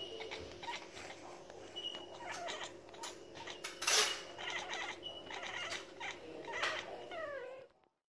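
Bengal cat chirping and chattering in a run of short calls, the excited chatter of a cat watching birds she cannot reach; one call falls in pitch near the end.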